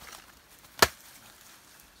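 A machete striking once into a section of banana stem, a single sharp chop about a second in, splitting the stem down the centre.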